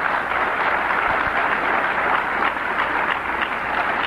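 An audience applauding, a dense, steady clapping.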